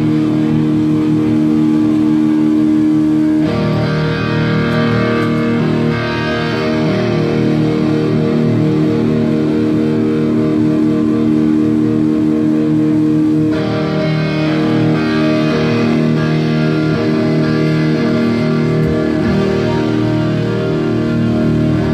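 Live rock band playing, led by electric guitar over bass: long held chords that change abruptly about three and a half seconds in and again around thirteen and a half seconds.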